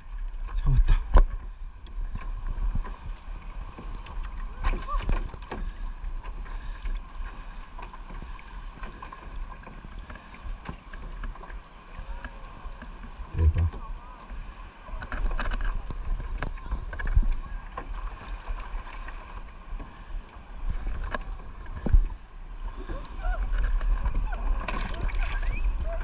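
Small waves lapping against a plastic kayak hull, with wind rumbling on the microphone and scattered light knocks against the hull, one a little louder about 13 seconds in and another near 22 seconds.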